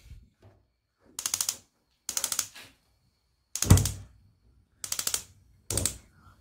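Five short bursts of rapid metallic clicking, about a second apart, at a gas stovetop; the third begins with a dull thud.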